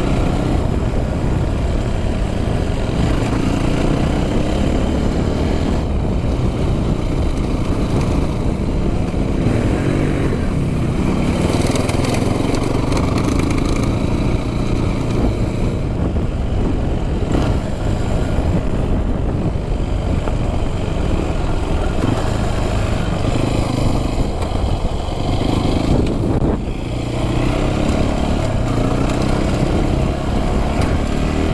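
Yamaha WR426F four-stroke single-cylinder dirt bike engine running steadily under way, with one brief drop in loudness near the end.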